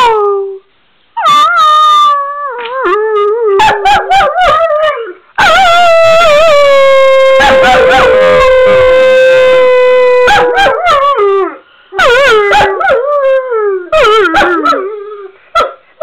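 Weimaraner howling: several howls that slide down in pitch, then one long howl held on a steady note for about five seconds, then more short falling howls.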